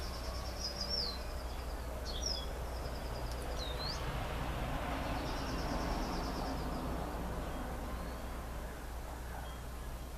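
Background ambience with a bird giving high trilled calls and a few short swooping notes during the first seven seconds, over a steady low hum.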